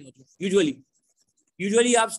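A man's voice: a short spoken word about half a second in, a pause, then speech starting again near the end.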